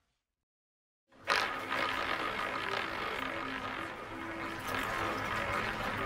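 Dead silence for about a second, then the soundtrack of a casino advertisement starts abruptly: a dense, noisy rush with a few faint held tones underneath.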